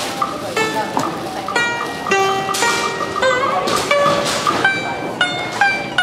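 A Vietnamese plucked string instrument playing a short phrase of single notes. Around the middle, one note's pitch is pushed and wavers as the string is pressed, bending it by a quarter tone, a step smaller than a semitone.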